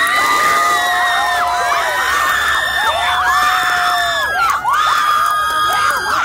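Audience cheering and screaming at the end of a stage performance, with many long, high-pitched shrieks overlapping in waves.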